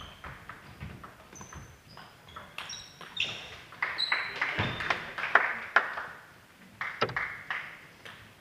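Table tennis balls clicking off bats and tables in rallies at two tables, the knocks coming in quick runs, with several short high-pitched squeaks in between, likely shoes on the hall floor.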